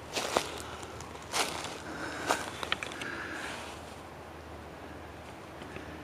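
Footsteps crunching through dry leaf litter, about one step a second, falling quiet about halfway through.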